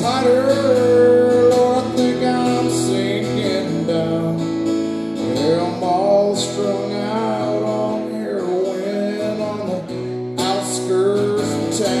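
Live country-rock song on guitar: strummed chords with a bending melody line over them, in an instrumental stretch between sung lines.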